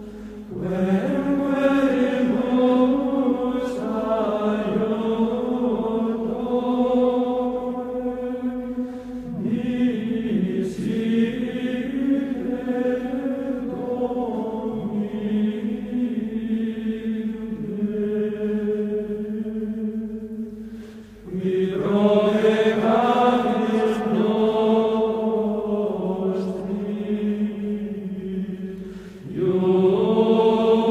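Background music of slow vocal chant: long-held sung notes in phrases, with short pauses between phrases.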